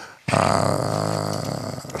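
A man's low, drawn-out hesitation sound, a held 'eh' at one steady pitch lasting about a second and a half, starting a moment in.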